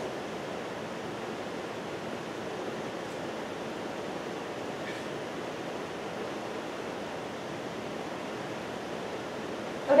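Steady, even hiss of room tone in a lecture hall, with no other sound standing out.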